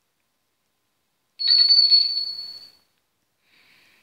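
A small bell rung once: a bright, high ring that starts suddenly about a second and a half in and fades away over about a second.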